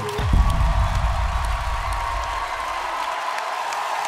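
A deep low boom closes the dance music just after the start and dies away over a couple of seconds, under a studio audience cheering and applauding.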